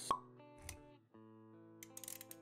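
Animated-intro sound design: one sharp pop sound effect just after the start, the loudest thing, over a soft music bed of held notes. A short low thud follows a little past half a second in, and quick clicks come near the end.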